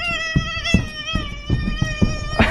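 A young woman imitating a baby crying with a pacifier in her mouth: one long, high-pitched wail held at a nearly steady pitch, with several soft thumps under it.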